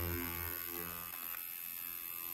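Handheld ultrasonic skin scrubber for facial peeling, switched on and running with a steady electric hum and a thin high whine above it.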